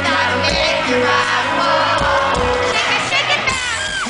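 A rock band playing live, with drums, electric guitar and singing, and a crowd shouting over the music near the end.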